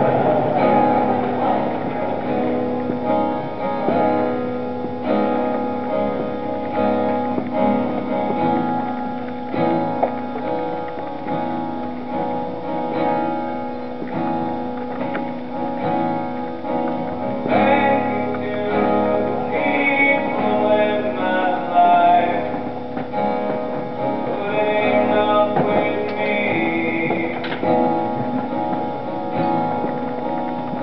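Solo acoustic guitar played live, the instrumental intro of a song, with steady ringing chords and picked notes.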